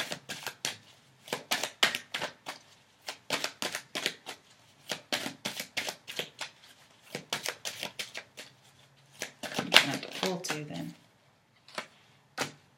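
A tarot deck being shuffled by hand: a quick run of soft card slaps and flicks, several a second, that breaks off shortly before the end.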